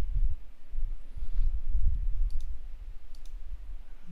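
A few computer mouse clicks, two pairs in the second half, over a low background rumble.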